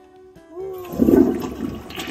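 Toilet flushing: water rushes loudly into the bowl and swirls down, starting about a second in.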